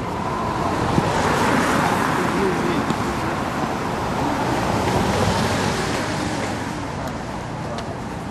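A car passing on the street: tyre and engine noise swells over the first second or two and fades away by about seven seconds in, with faint voices beneath it.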